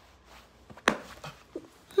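Quiet room tone broken by a single sharp click a little under a second in.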